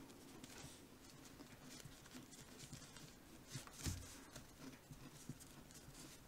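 Faint scratching and tapping of a plastic fork roughening the surface of small dough discs, with one slightly louder knock about four seconds in.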